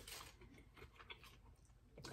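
Near silence, with faint chewing and a few small clicks of eating.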